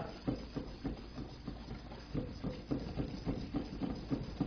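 A whisk stirring a dry flour and cocoa powder mix in a mixing bowl: a quick, even run of light taps and scrapes, about three or four a second.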